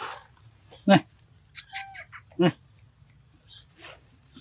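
Baby monkey giving two short, high cries about a second and a half apart.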